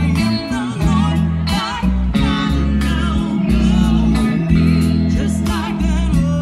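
Live band playing a gospel song: singers with a wavering vibrato over electric guitar, bass guitar and drums.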